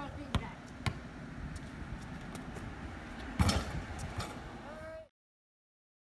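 Basketball bouncing on a concrete driveway: a couple of sharp dribbles, then a louder clatter of impacts about three and a half seconds in. The sound cuts off abruptly near the end.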